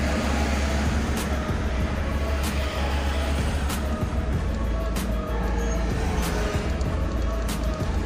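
Steady low rumble of a car driving, heard from inside the cabin, with music playing along and sharp ticks repeating about every second and a quarter.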